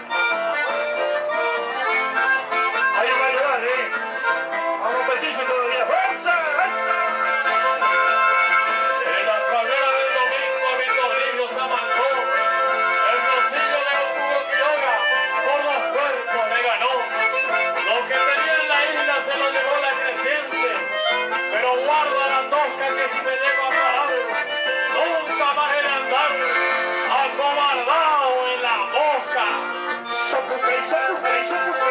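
Live chamamé band playing an instrumental passage led by accordion and bandoneón, over acoustic guitars and bass guitar, with a steady dance beat.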